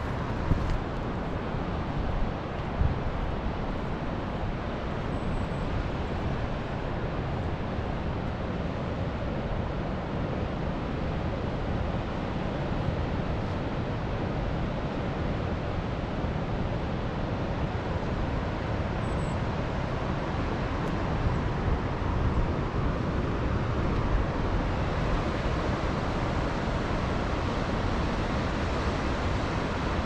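Steady rushing outdoor noise of wind and distant ocean surf, with a low rumble from wind on the microphone.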